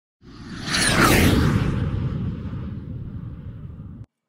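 Intro sound effect: a whoosh with a deep rumble that swells to its loudest about a second in, with a falling high streak at the peak. It then fades slowly and cuts off suddenly near the end.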